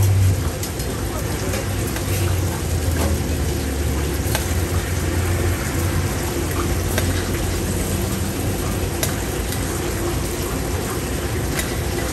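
Food sizzling on a gas range over a steady low hum, with a few light clinks of metal as sautéed vegetables and sauce are tipped from a stainless saucepan into a takeout container.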